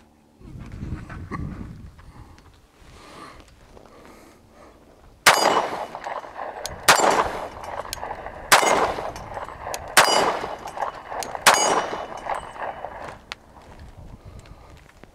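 Five shots from a Rock Island Armory Officers Model 1911 .45 ACP pistol, fired at an even pace about a second and a half apart starting about five seconds in, each with a short ringing tail.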